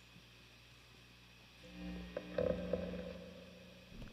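Electric guitar played through an amplifier: after a quiet start, a few notes picked about halfway through ring out and slowly fade.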